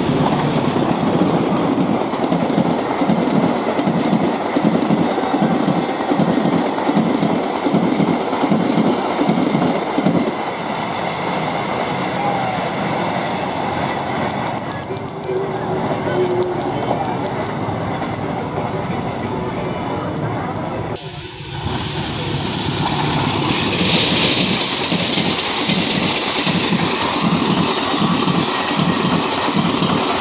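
Diesel-hauled passenger trains passing close by, their wheels clattering in a steady rhythm over the rail joints. The clatter eases off around the middle, breaks off abruptly a little after twenty seconds, and resumes as another passenger train rolls past.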